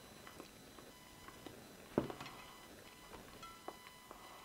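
A person chewing a bite of banana with the mouth closed: faint, wet mouth clicks, with one louder click about halfway through.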